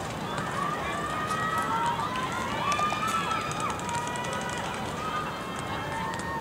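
Several voices shouting and calling out across an outdoor soccer pitch during a set piece, loudest around the middle, over a steady background hiss.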